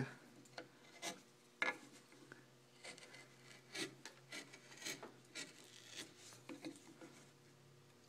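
A No. 11 U-shaped hand gouge cutting into wood: about a dozen short, quiet scraping cuts, irregularly spaced. The cuts go back over a carved circle's outline to deepen it.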